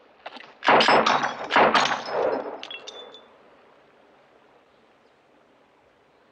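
A quick run of revolver shots and glass bottles shattering, starting about a second in and lasting about two seconds, followed by brief high glassy tinkling.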